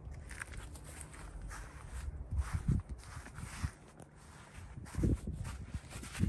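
Footsteps on the ground beside the outdoor unit: several irregular steps with short scuffs and low thumps.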